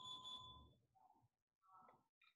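Near silence, except for a faint, short electronic tone of steady pitch right at the start, lasting under a second.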